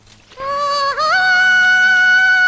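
A singing voice holding one long note, starting about half a second in and stepping up to a higher held note about a second in.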